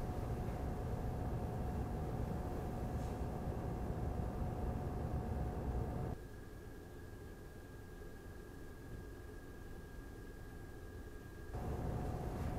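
Razer Core X eGPU enclosure's stock 120 mm intake fan and power-supply fan running at idle: a steady whir with a faint tone in it. About six seconds in it drops abruptly to a quieter whir with a thin higher tone, and the louder whir returns shortly before the end.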